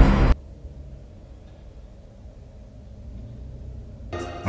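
A loud rushing noise cuts off sharply a fraction of a second in. It leaves a faint, steady low rumble heard from inside a parked car.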